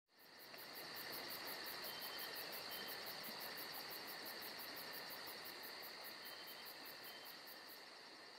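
Faint insect chorus: a steady high buzz with rapid, even chirping about five times a second. It fades in just after the start and slowly weakens toward the end.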